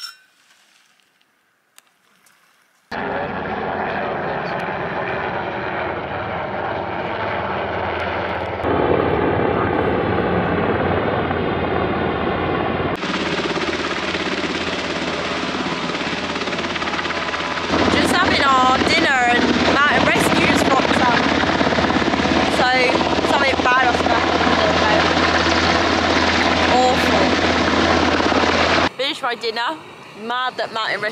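Search-and-rescue helicopter flying overhead, its rotor and engine making a loud, steady, layered drone. It starts abruptly about three seconds in, changes level in a few sudden steps, and cuts off just before the end.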